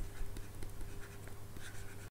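Faint pen scratching and small ticks of writing, irregular, over a low steady hum.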